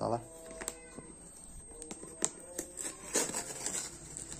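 A cardboard parts box being handled and opened by hand: scraping and rustling of cardboard and tape, with a few sharp clicks and a louder tearing rustle near the end.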